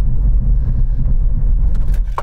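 Steady low road and tyre rumble inside the cabin of a Nissan Ariya electric SUV under hard braking from about 60 mph with maximum regenerative braking. There is no engine note.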